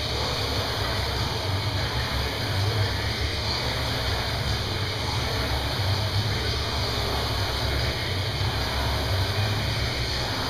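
Rowing machine flywheel spinning under continuous hard strokes, a steady whooshing rush with a low rumble that comes and goes.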